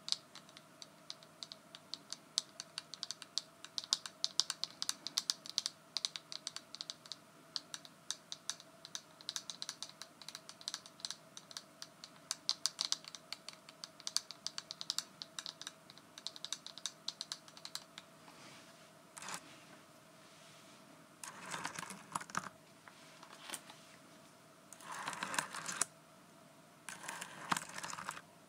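Long fingernails tapping rapidly on the clear plastic back of a glitter-filled hairbrush, in fast, dense clicks. In the last third the clicking stops and gives way to a few short, scratchy swishes.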